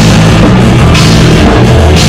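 Punk rock band playing live at full volume: distorted electric guitar over a drum kit with crashing cymbals, in an instrumental stretch without singing.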